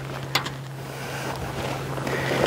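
Steady low hum of honeybees around the hives, with wind noise on the microphone and a single sharp click about a third of a second in.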